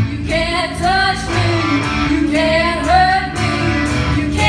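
Three young female voices singing a line together in harmony, with electric guitars and drums playing underneath.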